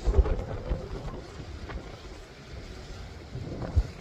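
Wind buffeting the microphone, a low rumbling noise with stronger gusts at the start and just before the end, over the steady wash of a choppy sea.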